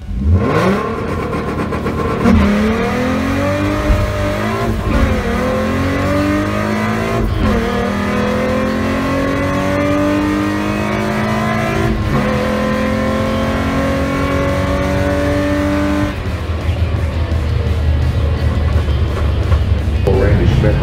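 Ford Mustang 3.7-litre V6 at full throttle on a quarter-mile drag run, heard from inside the cabin. It launches at the start and the revs climb through each gear, with four upshifts where the pitch drops. About sixteen seconds in, the throttle is lifted and the engine note falls away.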